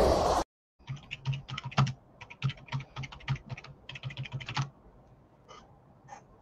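A loud rushing noise that cuts off abruptly about half a second in, then typing on a computer keyboard: a quick run of key clicks, several a second, for about four seconds, with a few faint clicks near the end.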